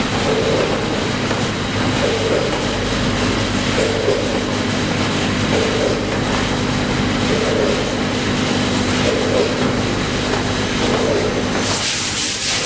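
Tobacco packing machine running steadily, a dense mechanical noise over a steady hum, with a heavier beat repeating about every second and three quarters. Near the end the hum stops abruptly and a steady hiss takes over.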